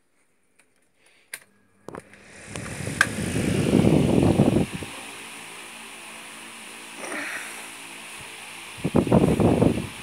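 A 50 cm Moretti pedestal fan switched on with a click about two seconds in, spinning up to a steady whir with a faint motor hum. Its airflow rumbles loudly on the microphone twice, in the middle and near the end.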